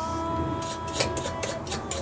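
Pocket knife blade scraping the enamel insulation off the end of a copper magnet wire on a metal bench: a rapid series of short scratchy strokes. A steady tone sounds under them and stops near the end.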